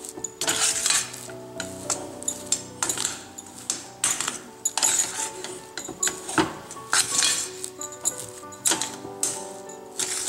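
A metal slotted spatula scraping and knocking irregularly against a steel pan as stiff millet-flour dough is mixed and kneaded, over background music.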